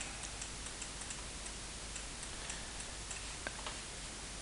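Faint, irregular light ticks of a stylus tapping on a drawing tablet while handwriting, with one a little clearer about three and a half seconds in, over a steady low hiss.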